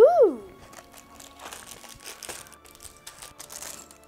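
A short child's vocal exclamation, rising then falling in pitch, at the start, followed by about three seconds of crinkling and rustling packaging as the cardboard door of an advent calendar is pulled open and the small plastic bag of LEGO pieces inside is handled.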